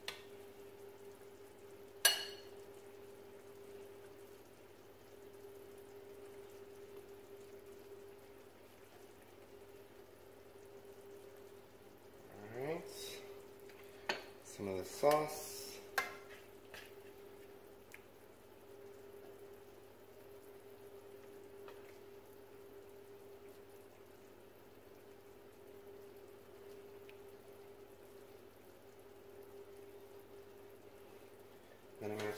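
Serving utensils knocking and scraping against a stainless steel sauté pan and a ceramic bowl as meatballs and tomato sauce are dished out: one sharp ringing clink about two seconds in, then a cluster of clinks and short scrapes around the middle. A steady low hum runs underneath.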